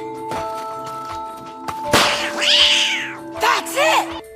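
A cat meowing, one drawn-out arching call after a sharp hit about two seconds in and a shorter rising call near the end, over background music with steady held notes.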